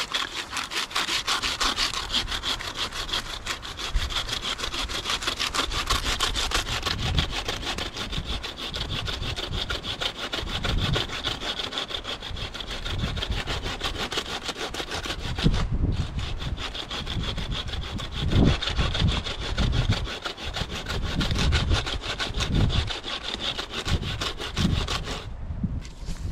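Bucksaw with a Bahco 21-inch dry-wood blade cutting deep into a thick fallen tree trunk, in steady back-and-forth strokes. The sawing stops briefly a little past the middle and again just before the end.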